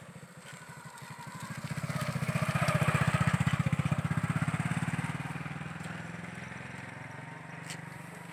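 A vehicle engine with a fast, even pulse passes close by, growing louder to a peak about three seconds in and then fading away.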